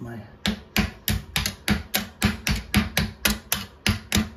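Rapid, even light tapping, about four strikes a second, on a rusted toilet-seat bolt to knock it loose from its corroded, frozen wing nut.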